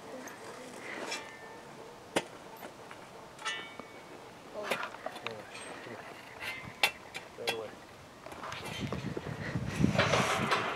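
Faint voices murmuring, with a few sharp knocks, clearest about two seconds in and again near seven seconds. A low rumble of wind or handling rises near the end.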